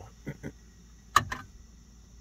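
A brief soft laugh at the start, then two sharp clicks in quick succession a little over a second in, the first much louder: hand-handling noise.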